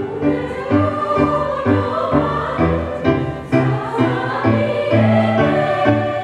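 Small choir singing a medley of traditional Japanese songs, accompanied by an electronic keyboard playing low notes that change in an even, steady rhythm under the voices.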